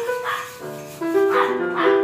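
Electronic keyboard played in a piano voice: a melody of held notes over chords, moving from note to note in steps.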